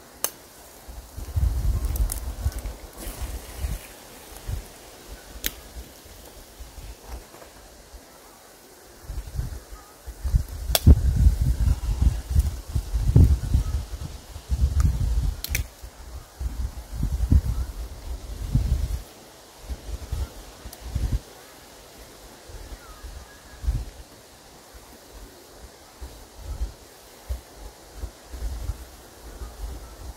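Wind buffeting the microphone in irregular low rumbling gusts, heaviest through the first two-thirds, with a few sharp clicks.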